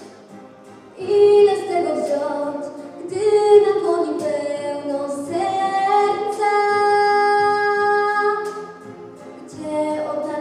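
A young girl singing solo into a handheld microphone, amplified over the hall's sound system. Her voice comes in about a second in, holds one long note in the middle, dips briefly, then carries on near the end.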